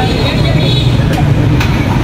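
Loud, steady open-air noise of a busy food street: a low rumble like engines running, with people's voices mixed in.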